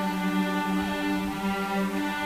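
String orchestra with prominent cellos playing a slow, held chord, the notes shifting slightly about halfway through.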